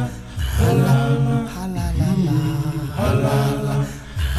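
Low male voices singing close a cappella harmony in long held phrases with short breaths between them: a South African isicathamiya-style male choir.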